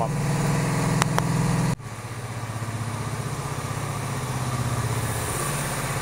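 Honda V45 Sabre's liquid-cooled 750 cc V4 engine idling steadily while warming up, with its fresh coolant fill. A small click about a second in; just before two seconds the sound drops abruptly in level and the idle carries on a little quieter.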